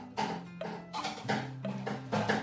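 A toddler beating a small drum with a stick: a string of uneven, irregularly spaced hits, several a second, over quiet background music.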